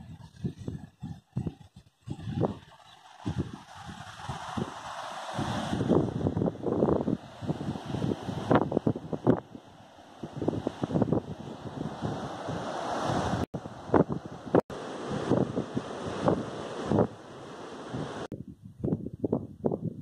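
Wind gusting on the microphone over the hiss of sea surf breaking on rocks below a cliff, with irregular low buffeting. The hiss sets in about two seconds in and cuts off suddenly near the end.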